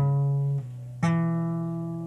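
Acoustic guitar fitted with a capo, a D7 chord plucked and left to ring. A second pluck comes about a second in and also rings on.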